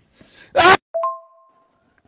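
A brief high-pitched wailing cry from a voice. About a second in, a sudden ringing tone with two steady pitches follows and fades within about half a second.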